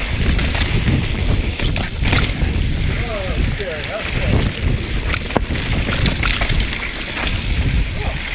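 Mountain bike ridden fast down rough, rocky dirt singletrack: a continuous rumble of wind buffeting and tyres on loose dirt, broken by frequent sharp clicks and knocks as the bike rattles over rocks and roots.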